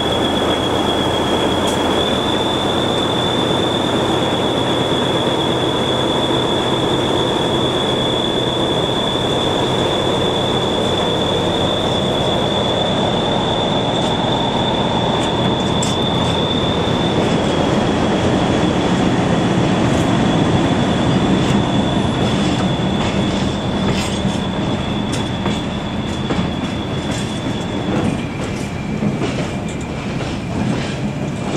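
Freight train rolling slowly through the yard, its wheels giving one long, steady, high-pitched squeal on the rails over a low diesel hum. From about halfway, clicks of wheels over rail joints join in, and near the end the squeal drops to a lower pitch.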